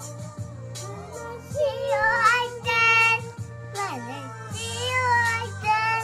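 A child singing, with music playing behind.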